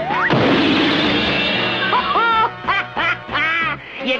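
Cartoon sound effects of a slip and fall: a rising whistle glide ends in a crash a moment in, its noise falling away over a second or so. Then a run of short, quacking squawks follows, over music.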